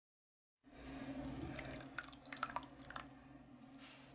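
A quiet low steady hum with a scatter of wet drips and clicks, starting about half a second in, as tomato sauce is tipped from a can into a pan of cooked ground turkey.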